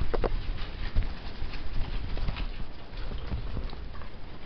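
Pet rats scurrying over a bed sheet: light scattered scratching and tapping with fabric rustle, over the low rumble of a handheld camera being moved. One short, louder sound comes just after the start.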